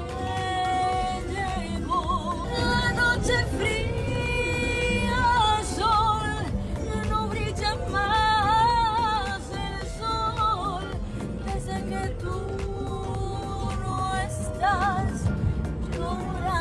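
A woman singing a sad ballad at full voice, with a wavering vibrato on her held notes, over backing music.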